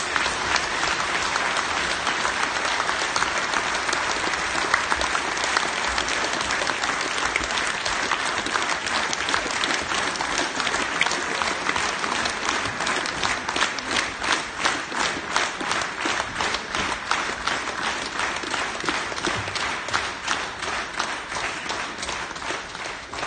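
An audience applauding: dense, sustained clapping that thins into more distinct, separate claps over the last several seconds.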